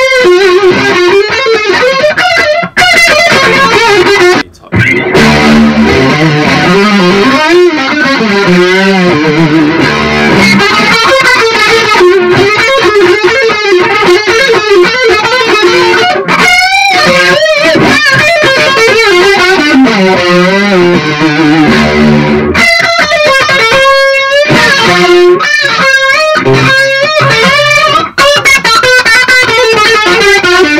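Electric guitar played through a Blackstar ID:CORE 100 combo amp with its modulation effect switched on, the notes wavering and sweeping. The playing breaks off briefly about 3 and 4.5 seconds in and again near the end.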